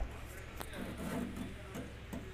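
Indistinct voices talking in the background over a steady low hum, with a single sharp click about half a second in.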